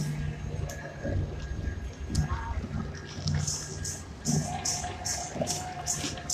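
Street music at a march: a steady beat of hissing hits, about three a second, comes in about halfway, with a held note over it and crowd voices underneath.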